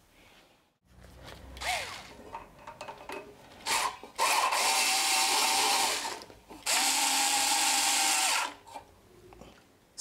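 Cordless drill-driver with a socket on an extension spinning a fastener on a rear drum-brake backing plate, run in two bursts of about two seconds each with a steady whine. A few light clicks and taps of metal come first.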